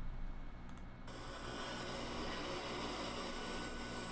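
Faint, steady outdoor background noise from a news clip's field audio on an airfield, an even hiss with no distinct events, starting abruptly about a second in.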